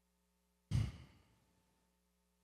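A man sighing: one sudden breath out close to the microphone, a little over half a second in, fading away within about a second.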